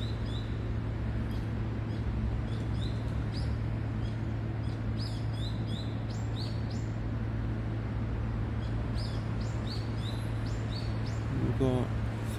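Small bird chirping: short, high, thin calls repeated irregularly, over a steady low hum.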